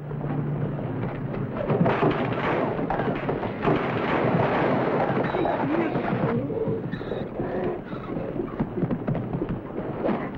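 A mule bucking and kicking loose, with repeated wooden crashes and thuds and indistinct shouting voices.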